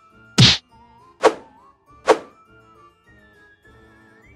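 Three loud whacks about a second apart over quiet background music with a simple melody.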